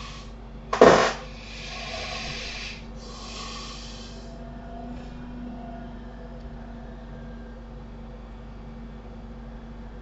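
A person's breathing close to the microphone: a short loud burst of breath about a second in, then two longer, softer breaths, over a steady low electrical hum that carries on alone for the rest of the time.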